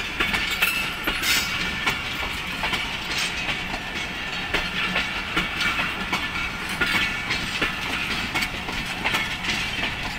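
Passenger coaches of a departing express train rolling along the track, the wheels clicking irregularly over the rail joints above a continuous rumble and rail noise.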